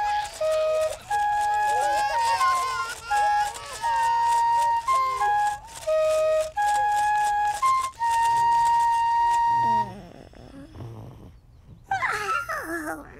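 A gentle, sleepy tune on panpipes, played as a slow run of held notes that ends on one long note about ten seconds in, with a shaker rattling softly along.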